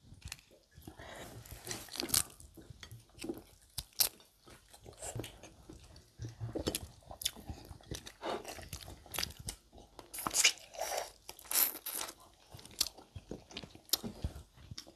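People eating barbecue buffalo wings and seafood-boil shrimp close to the microphone: irregular biting, chewing and crunching noises with no steady rhythm.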